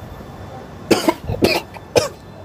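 A man coughing in a run of short, harsh coughs starting about a second in, after drawing on a joint of marijuana.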